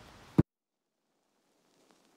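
A single sharp click or knock just under half a second in, then dead silence.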